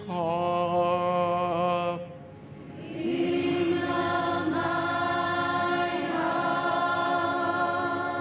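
A man singing a slow church song in long held notes, with several voices singing together. One phrase ends about two seconds in, and a longer held phrase starts about a second later.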